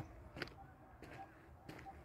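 Faint, scattered footsteps of a person walking on an unpaved dirt road, a few soft steps over a quiet open-air background.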